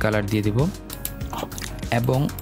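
A man's voice speaking over steady background music.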